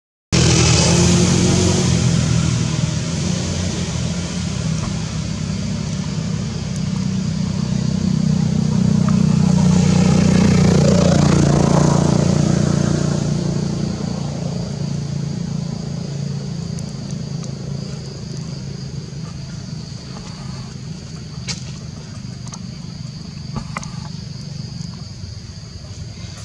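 A low motor-vehicle engine rumble that builds to its loudest about halfway through and then fades, as a vehicle passing by. A steady high-pitched hum sits above it throughout.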